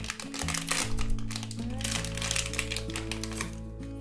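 Plastic blind-box bag crinkling and crackling in rapid, irregular bursts as hands crumple it and tear it open.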